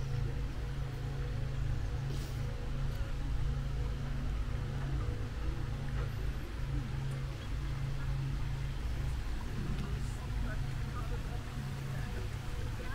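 Outdoor ambience: a steady low rumble with a faint hiss over it, and faint distant voices.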